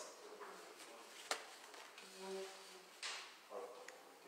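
Quiet room tone in a pause between spoken sentences, with a single sharp click a little over a second in, a faint brief tone about two seconds in, and two short soft noises near three seconds.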